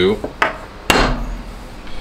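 A metal bait mold being handled on a work surface: a light click, then one sharp knock about a second in.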